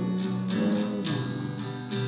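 Acoustic guitar strummed in a steady rhythm, its chords ringing between strokes.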